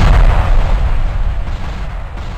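A loud crashing impact sound effect for animated 3D title letters, its low rumble dying away steadily.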